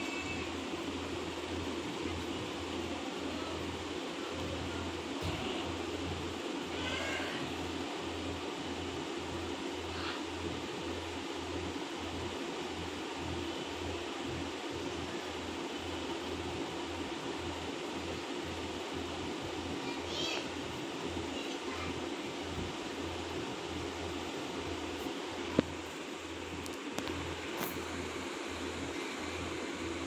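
Steady low background hum with no speech. A few faint, brief wavering high-pitched calls come through about seven and twenty seconds in, and there is a single faint click near the end.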